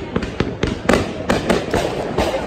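Fireworks popping and crackling: a dense, irregular run of sharp cracks, several a second.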